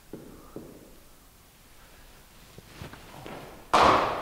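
A cricket bat striking a ball: one loud, sudden hit near the end, after a few faint taps.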